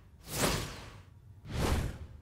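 Two whoosh sound effects about a second apart, one starting a fraction of a second in and the next about a second and a half in, each swelling up and fading away quickly.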